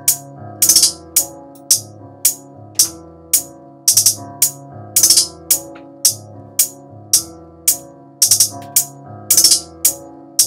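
Programmed trap hi-hat loop playing back in Akai MPC software: crisp hi-hat hits about every half second, with quick rolls of several hits every couple of seconds, some notes pitched down a semitone or more. Low sustained pitched tones run underneath and shift with the pattern.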